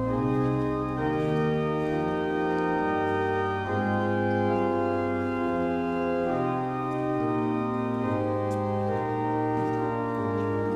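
Church pipe organ playing slow, sustained chords that change every second or two.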